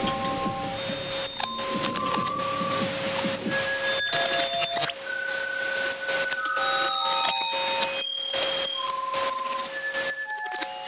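Beatless experimental electronic music: short electronic beeps at scattered pitches, high and low, over one steady held tone, with a thin hiss and occasional clicks. The bass thins out about halfway through.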